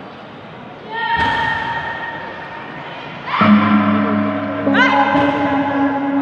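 A gong struck three times, about a second in, at three and a half seconds and just before five seconds, each stroke ringing on. The second stroke is the deepest. This is the gong that signals the rounds in a pencak silat bout.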